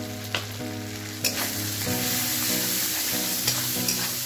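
Onion-tomato masala sizzling in hot oil in a kadhai while a metal spatula stirs in freshly added turmeric powder, with the odd scrape and click of the spatula against the pan. The sizzle gets louder about a second in, as the masala is turned over.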